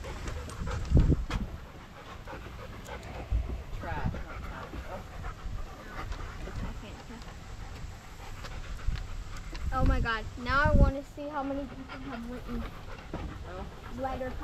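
A dog panting, with a brief stretch of a person's voice about ten seconds in.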